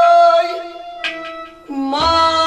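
Kashmiri Sufi folk music with harmonium and plucked rabab. A long held note dies away about half a second in, a short pluck sounds about a second in, and a new, lower note starts near the end.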